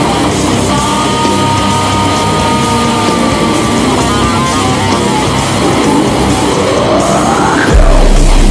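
Heavy metal music: electric guitar riffing over a full band. A high note is held from about a second in. Near the end a rising sweep builds into a sudden loud, heavy hit.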